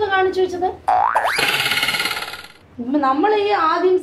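Cartoon-style "boing" comedy sound effect: a springy twang that starts suddenly about a second in, slides upward in pitch and holds for about a second and a half before fading out.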